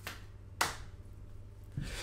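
A single sharp hand clap about half a second in, over a faint steady low hum of room tone.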